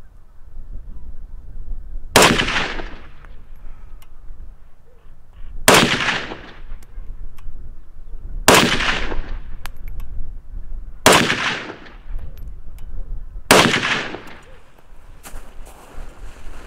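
Soviet SKS semi-automatic rifle firing 7.62x39 Romanian steel-case surplus: five single shots spaced about two and a half to three and a half seconds apart, each a sharp crack that trails off briefly.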